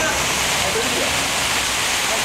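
Steady hiss of splashing fountain jets, with faint voices in the background.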